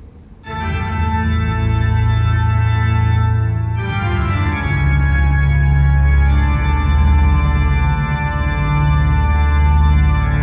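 Organ music with deep, held bass notes playing loud through a JVC RV-NB1 boombox's speakers and powered subwoofer, starting about half a second in after a brief gap as the track changes.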